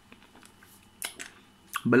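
A pause in a man's talk in a small room: faint room tone with a couple of soft clicks about a second in, then he starts speaking again near the end.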